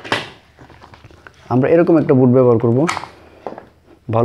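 A man's voice speaking for about a second and a half in the middle, with a short hiss at the start.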